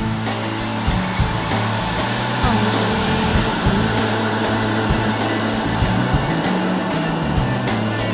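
An instrumental passage of a pop song, with a steady beat and a sustained bass line.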